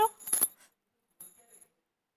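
Light metallic jingling of jewellery: a few quick clinks about a third of a second in, with a faint second jingle a little past the middle.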